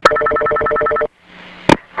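Telephone ring heard over a recorded phone line: a steady two-tone ring for about a second that cuts off, then faint line hiss and a single click as the call is answered.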